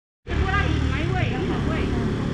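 People talking over a steady low rumble, starting abruptly about a quarter second in.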